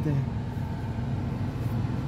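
Steady low rumble of a car's engine and road noise, heard from inside the cabin.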